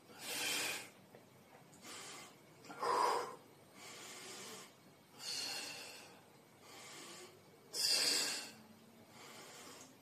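A man breathing hard in rhythm with dumbbell biceps curls: a forceful blown-out breath about every two and a half seconds, with quieter breaths in between.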